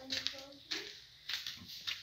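Three soft footsteps, about half a second apart.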